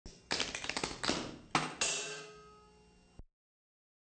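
Tap shoes striking a stage floor in a quick, uneven run of sharp taps, ending with a harder strike that rings out and fades. The sound cuts off abruptly about three seconds in.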